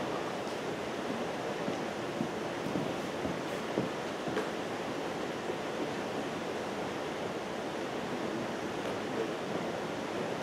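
Steady hiss of room tone and recording noise, with a few faint taps scattered through it.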